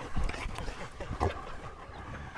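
A dog close by, snuffling and moving against the people, with clothing rustle on a clip-on microphone and a few soft thumps, one near the start and one just past a second in.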